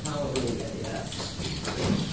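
Faint murmured voices and a few light clicks from handling on the table, with the room tone of a small meeting room.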